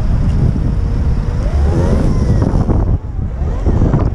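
Wind buffeting the microphone of a camera riding on an electric dirt bike in motion, a heavy steady rumble, with a faint whine that rises and falls over it.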